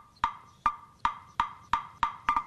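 Wood block struck in an even rhythm, a short hollow knock about every third of a second, quickening slightly near the end, as part of background music.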